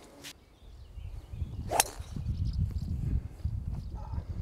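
A golf club striking the ball on a tee shot: one sharp crack about two seconds in, over a low rumble.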